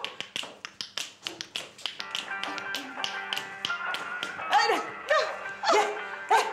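Quick rhythmic taps keeping a dance beat by hand. Music with held notes joins about two seconds in, and voices call out with short rising-and-falling cries near the end.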